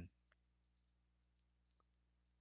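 Near silence: faint room hum with a few faint, short clicks, about a third of a second in and again near the end.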